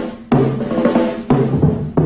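Band music from a cartoon soundtrack: drum kit strikes about once a second over sustained low instrumental chords, in a short instrumental break in the song.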